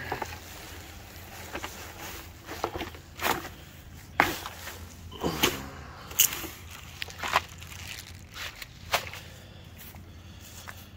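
A cardboard box being opened and plastic side-skirt panels in plastic wrap pulled out and handled: irregular crinkling, scraping and sharp knocks, about half a dozen strong ones, over a steady low rumble.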